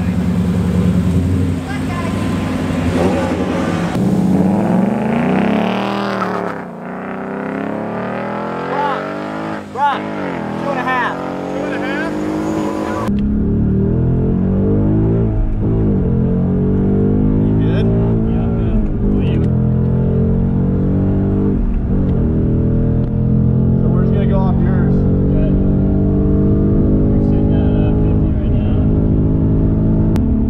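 A 2017 Ford Mustang GT's 5.0 V8 accelerating hard away from the start line, heard first from outside and then, after about 13 s, from inside the cabin. The engine pitch climbs repeatedly with brief dips at the gear changes.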